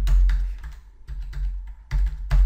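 Computer keyboard being typed on: about half a dozen separate keystrokes, unevenly spaced, each with a dull low thump, as a phone number is keyed in digit by digit.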